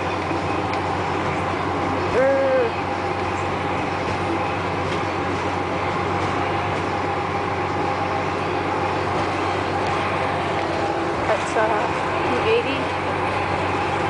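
Inside a moving school bus: steady engine and road noise with a low hum as the bus drives along. Short bits of voice come through about two seconds in and again near the end.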